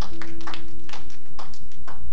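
Hand claps at about two to three a second, with a single steady keyboard note that starts just after the claps begin and is held throughout.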